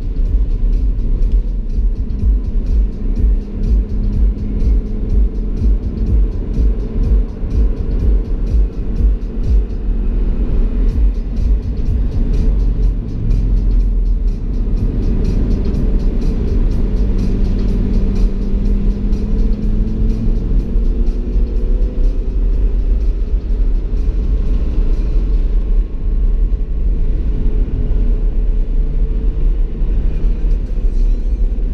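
Audi R8's V10 engine heard from inside the cabin at speed on track, a heavy low rumble with its pitch climbing slowly under acceleration, most clearly in the second half.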